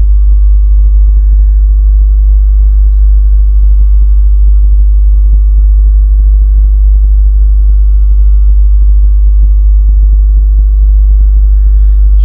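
A loud, steady low hum with fainter steady higher tones above it, unchanging throughout.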